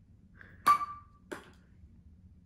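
A small thrown ball striking hard surfaces twice: a sharp tap with a short ringing ping about two-thirds of a second in, then a softer tap about half a second later.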